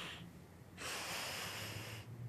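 A man breathing heavily through his nose: one breath ends just after the start, and a longer one begins a little under a second in.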